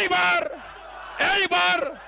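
A man shouting a two-beat rally slogan over a public-address system, twice, about a second and a quarter apart, with crowd noise beneath.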